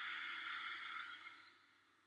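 A long audible breath from a person holding a seated forward bend, starting suddenly and fading away over about a second and a half.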